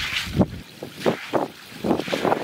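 Short hand broom swept in quick strokes across wet concrete, swishing and splashing through standing water; about five strokes, the loudest about half a second in.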